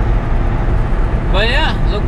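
Steady low drone inside a moving semi truck's cab at highway speed: a Volvo 780's Cummins ISX diesel engine running along with road noise.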